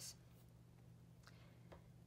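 Near silence: room tone with a low steady hum and a couple of faint ticks.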